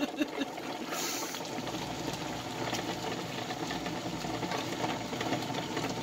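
Vegetable stew simmering in a wok, its sauce bubbling in a steady fine crackle while a wooden spoon stirs through it.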